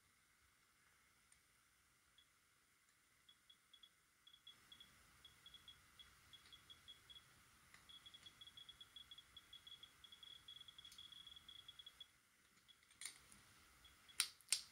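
Faint, high-pitched clicks from a CDV-717 survey meter converted to a CsI(Tl) scintillation detector, counting radiation. They come sparse and irregular at first, then fast and close together from about eight seconds in, as the detector nears a radium-dial gauge, and they stop around twelve seconds.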